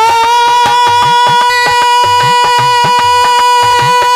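Live Indian folk music, loud: a male singer holds one long, high, steady note into a microphone while a hand drum keeps a quick, even beat with bending low strokes under it.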